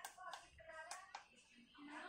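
Near silence after a held sung note ends, with faint voices and a few soft clicks.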